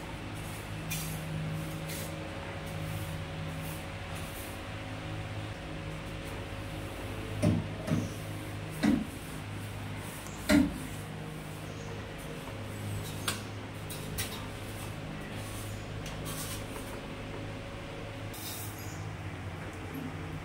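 Long-handled cobweb brush knocking against the wall and cupboard while dusting high up: four short knocks about halfway through, then a couple of faint taps, over a steady low hum.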